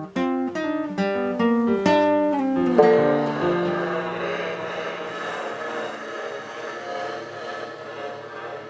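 Plucked acoustic string instrument playing a quick run of single notes, closing on a chord about three seconds in that rings out and slowly fades: the end of a song.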